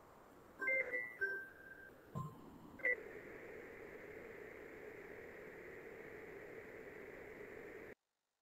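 A few short electronic beeps at two or three pitches about a second in, a dull thump, and one more brief beep. After that comes a faint steady hum.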